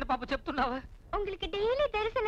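Speech only: a woman speaking lines of Tamil film dialogue, with a short pause about a second in.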